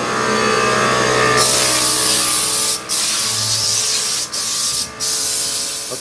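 Compressed air hissing hard from a handheld air tool over a steady hum. The hiss comes in about a second and a half in and is let off three times briefly, like a trigger being released and squeezed again.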